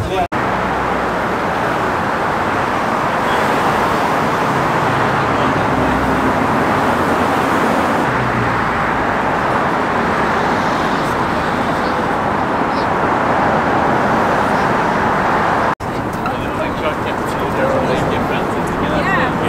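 Steady road traffic noise from busy roads below the bridge. Crowd voices come in near the end.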